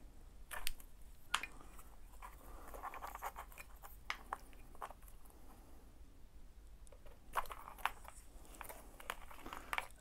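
Faint handling noise of small plastic wiring plugs and wires being worked apart by hand: light rustling with a few sharp clicks scattered through, over a steady low hum.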